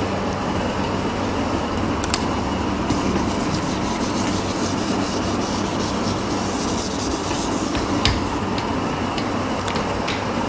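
A whiteboard eraser rubbing across a whiteboard, with sharp clicks about two and eight seconds in. A steady air-conditioning hum runs underneath.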